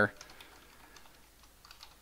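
Computer keyboard being typed on: faint, irregular keystrokes as a line of code is entered.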